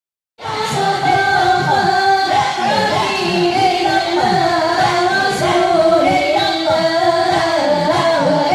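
Women singing an Islamic devotional chant, a drawn-out, ornamented melody that starts about half a second in.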